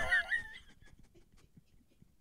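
A high-pitched, wavering laugh trailing off within the first half second, then near silence.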